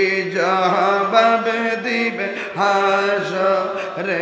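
A man singing a Bengali devotional song into a microphone, in long held notes with a waver, phrase after phrase.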